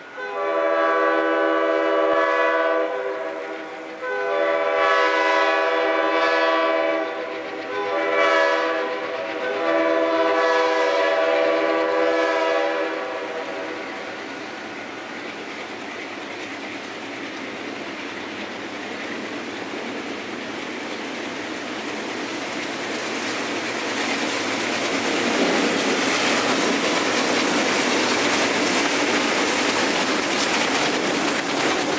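Multi-chime air horn of an approaching Alco diesel locomotive blowing the grade-crossing signal, long, long, short, long. Then the engine rumble and the wheels of the train grow louder as it nears and passes close by.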